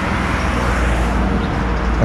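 Road traffic on a highway going by close at hand: a steady low rumble of engines and tyres.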